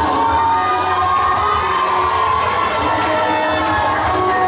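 A group of young children shouting together in long held calls, over crowd noise.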